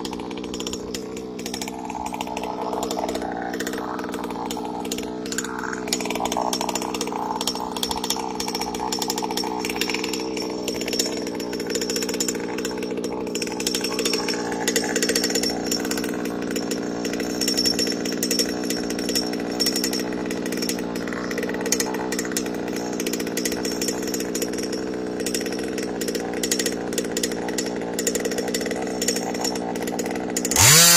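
Small gasoline two-stroke engine of a large-scale RC dragster idling steadily.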